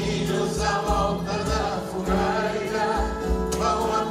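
A man and a woman singing a duet live into microphones, with Portuguese guitar and low bass accompaniment.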